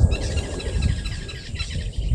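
Wild birds calling in a dense chatter of short chirps, thickest in the first second and a half and then thinning, over a low irregular rumble.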